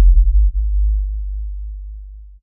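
A deep, loud bass boom, the kind of low impact hit used as a dramatic sting, fading slowly away.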